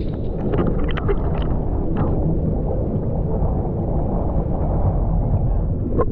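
Seawater sloshing and lapping right at a GoPro's microphone as it rides at the surface, a steady, muffled, low rush with a few small splashes in the first two seconds.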